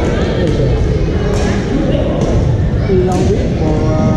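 Badminton rackets striking shuttlecocks: about four sharp cracks roughly a second apart, over the echoing chatter of many players in a large sports hall.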